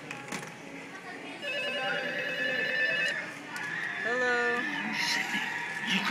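Telephone ring played through the small speaker of an animatronic Ghostface Halloween prop: a trilling electronic ring starting about one and a half seconds in and lasting about a second and a half, followed by a short gliding voice-like sound.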